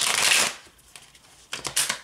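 A deck of cards being riffle-shuffled: a sudden half-second burst of cards flicking off the thumbs at the start, then a shorter rattle of cards about a second and a half in as the halves are squared together.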